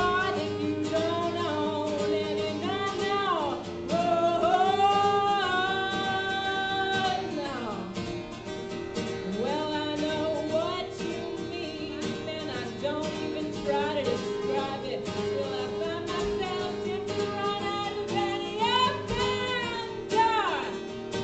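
A woman singing live to her own strummed acoustic guitar, holding long notes that slide between pitches over a steady strum.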